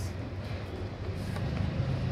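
Steady low background rumble, with a few faint light clicks as a neckband earphone's cable and cardboard tray are handled.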